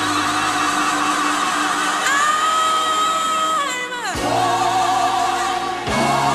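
Gospel group singing with long held notes. The voices slide down together just before four seconds in and settle on new sustained notes.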